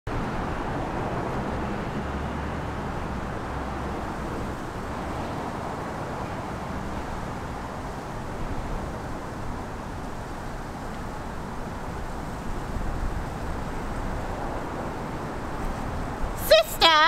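Outdoor city ambience: a steady wash of distant traffic noise with a low rumble.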